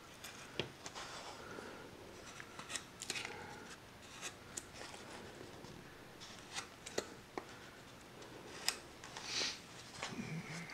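Small hand carving gouge cutting wood: irregular short snicks and scraping strokes as chips are pared away, with a sharper snick and a longer scrape near the end.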